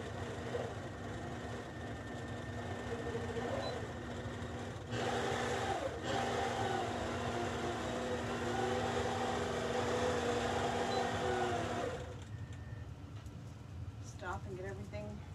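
APQS Millie longarm quilting machine running and stitching across a canvas leader, with a steady hum that gets louder about five seconds in and stops about two seconds before the end.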